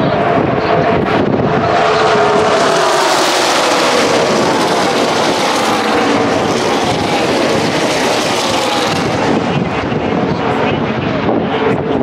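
A pack of NASCAR Xfinity Series stock cars' V8 engines at full throttle passing the grandstand, many engine notes overlapping and falling in pitch as they go by. The sound swells to its loudest in the middle and eases off near the end.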